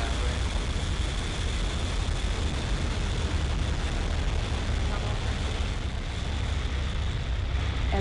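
SpaceX Falcon 9 rocket's first stage, nine Merlin 1D engines, during ascent just after liftoff: a loud, steady, deep rumble with a crackling hiss over it, heard through the launch feed.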